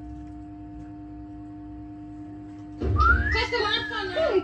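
A steady low hum, then about three seconds in a loud whistle-like sound that slides up in pitch and then falls.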